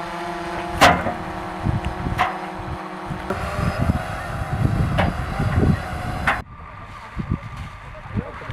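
An engine running steadily, with three sharp knocks scattered through it. About six and a half seconds in it cuts to a quieter windy outdoor hiss.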